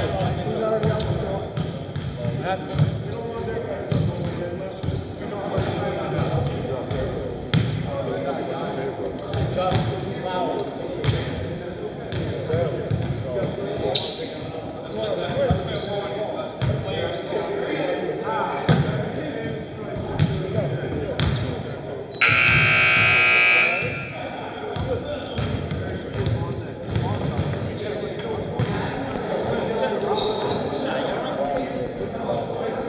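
Basketballs bouncing on a hardwood gym floor, with players' voices echoing in the large hall. About 22 seconds in, the gym's scoreboard buzzer sounds once for about a second and a half, the signal that ends the timeout.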